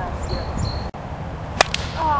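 A single sharp crack about one and a half seconds in, a plastic wiffleball bat hitting a wiffle ball, over steady background noise.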